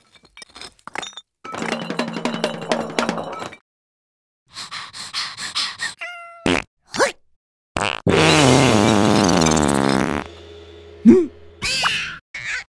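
Cartoon sound effects and vocal noises of animated larvae, short separate sounds one after another, with a loud drawn-out sound lasting about two seconds from about eight seconds in.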